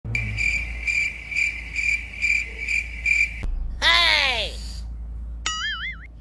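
Cricket chirping, about two chirps a second, cut off sharply by a click about three and a half seconds in. Then a single pitched glide falls steeply, and near the end a short warbling tone wavers up and down.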